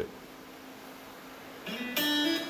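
A short quiet pause, then background guitar music begins near the end, with plucked notes.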